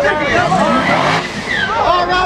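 A turbocharged Chevrolet drag car's engine revving up once at the starting line, rising in pitch, with a short hiss about a second in.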